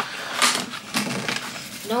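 A few light clicks and clatters of items handled on a kitchen counter, with a voice starting near the end.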